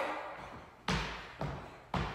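Thuds of feet landing on the floor during burpee hops: three landings, about half a second apart, each with a short ringing decay in the room.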